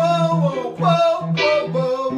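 A man singing over a keyboard played in repeated chords, the low note struck again about three times a second; the keyboard's tone is bright and plucked-sounding.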